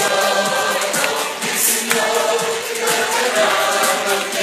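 Many voices singing a religious hymn together in long held notes, with music.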